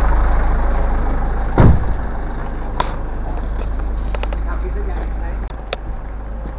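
A large bus's diesel engine idling close by, a steady low rumble that eases off near the end. A single loud thump comes about a second and a half in, with a few light clicks later.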